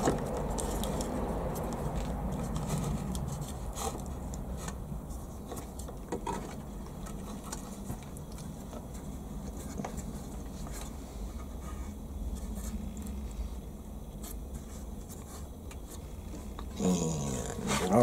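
Steady low background rumble with faint scattered clicks as a small screw C-clamp is tightened down on a board.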